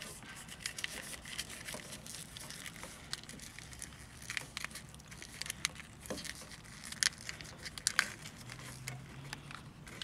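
Corrugated plastic split wire loom crinkling and crackling as hands pry it open and tuck a wire inside. There are irregular small clicks throughout, with a couple of sharper ones near the end.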